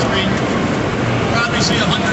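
A man's voice over a public-address loudspeaker, with a steady dense din from a large outdoor crowd under it.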